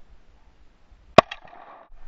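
A single gunshot from a scoped rifle about a second in, followed by its echo trailing off over about half a second.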